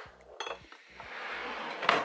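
Metal aerosol hairspray cans clinking against each other as they are set in a drawer. Then a drawer slides shut with a rising rush that ends in a sharp knock near the end.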